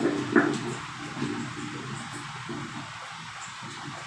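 Pages of a Bible being leafed through and turned, with a couple of sharp handling knocks near the start, picked up by a handheld microphone.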